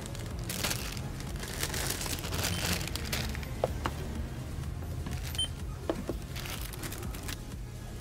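Groceries being handled at a supermarket checkout: a plastic bag of chips crinkling and plastic tubs knocked down on the counter. There is a short beep about five seconds in, over a steady low hum.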